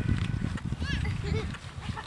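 Short, high-pitched shouted calls from voices on and around a football field, with a steady low rumble of wind on the microphone.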